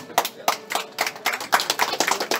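Hand clapping from a few people, a quick run of sharp claps right after the song's last held note ends.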